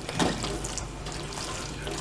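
A spoon stirring pasta in a stainless steel frying pan, with one knock against the pan about a quarter second in, over a steady, water-like hiss.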